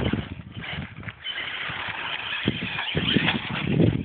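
HPI Savage Flux HP brushless electric RC monster truck running on a gravel road, its tyres crunching and scattering gravel in an uneven rumble.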